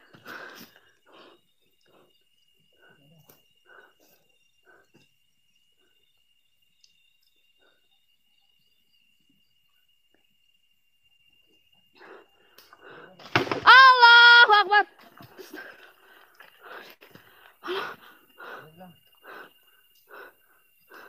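Mostly quiet, with a faint steady high tone. About two-thirds of the way through comes one loud, high-pitched human cry lasting about a second, its pitch rising and then falling. Scattered faint voices follow.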